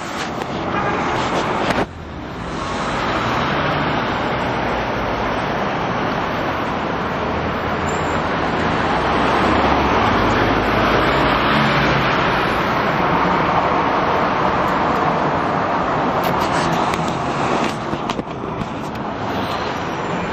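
City street traffic: a steady wash of car and road noise that swells after a brief dip about two seconds in, is loudest through the middle and eases near the end.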